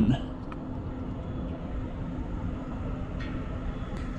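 Steady low rumble of outdoor background noise, with a faint steady hum that fades out about halfway through.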